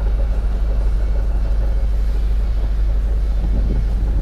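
Steady low rumble of outdoor street background noise, with no single sound standing out.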